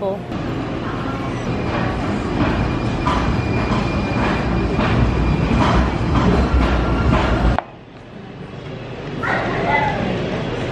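San Francisco Muni light-rail train passing on the street, a steady low rumble that grows louder toward its end, with voices in the background; it cuts off abruptly about three-quarters of the way through.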